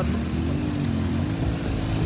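Road traffic: a passing motor vehicle's engine hum rises in pitch over the first second and a half, then holds steady over a low rumble.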